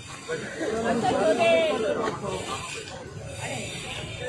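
People talking in the street, their words indistinct.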